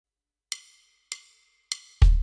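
Three evenly spaced wood-block clicks, a little over half a second apart, from a Yamaha Genos arranger keyboard, counting in the tempo before the song starts.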